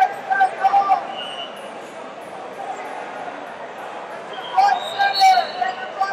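Voices calling out in a large, crowded hall, twice in a few seconds, over a steady murmur of room noise.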